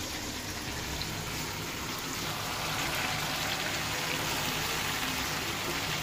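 Cut okra tipped into a pan of hot oil, chicken, onion and tomato, sizzling steadily as it fries. The sizzle grows a little louder two to three seconds in.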